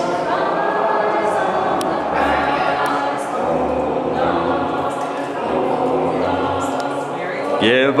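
A group of people singing together in chorus, many overlapping voices held on sustained notes. Near the end one voice breaks in louder, starting a chant.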